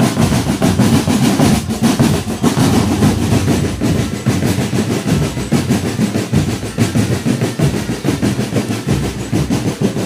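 Marching drum band percussion, snare drums and bass drums beating a fast, dense rhythm that stays loud throughout.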